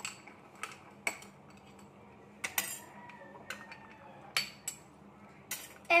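Metal spoon stirring an iced cappuccino in a drinking glass, clinking against the glass in irregular taps, a few of them ringing briefly.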